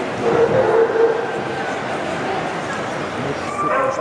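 A dog giving one short call, about a second long near the start, over the steady chatter of a crowd.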